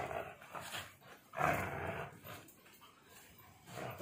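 A dog growling as it tugs on a rope toy, in two rough bursts, the louder one about a second and a half in.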